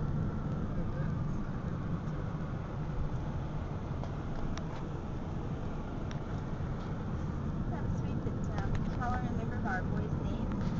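Steady low rumble of road and engine noise inside a moving Ford Freestyle, heard from the back seat.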